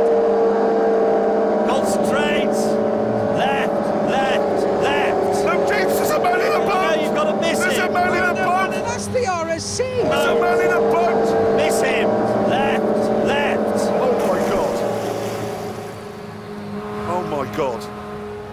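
Hovercraft engine and lift fan running with a steady drone, dying down for the last few seconds.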